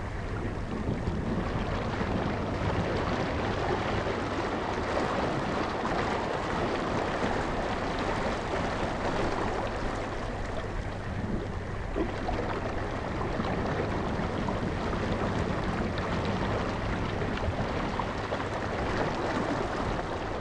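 Steady rush of rough open-sea water with wind blowing across it.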